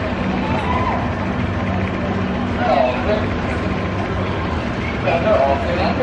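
A small roller coaster's train and ride machinery running with a steady low hum, with people's voices heard over it now and then.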